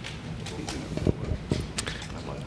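Room noise: faint background chatter with a low hum, and a few light knocks and clicks.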